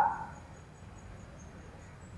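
A pause in speech: the tail of the last spoken word dies away in the room's echo right at the start, then quiet room tone with a faint, broken high-pitched whine.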